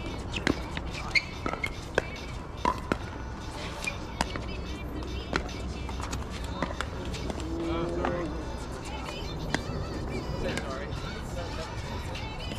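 Pickleball paddles striking the plastic ball in a doubles rally: sharp pops, several in the first few seconds and sparser later, with more paddle hits from neighbouring courts mixed in.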